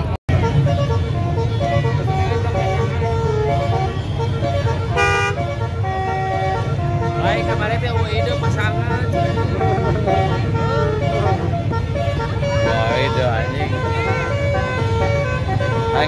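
Crowded street of football supporters in stalled traffic: horns toot again and again at different pitches over a steady low rumble of traffic and crowd noise, with voices shouting.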